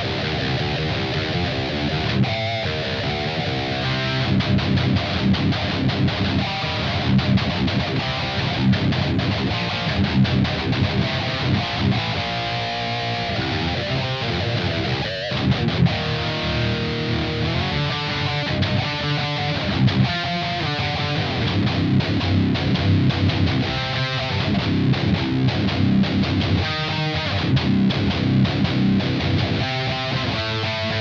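Schecter Evil Twin Solo II electric guitar with Fishman Fluence pickups, tuned to drop C, played through a Joyo Dark Flame distortion pedal. It plays high-gain metal riffs, rhythmic chugging passages broken by held chords.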